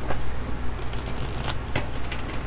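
A deck of oracle cards being shuffled by hand: a quick run of papery card clicks, thickest in the second half.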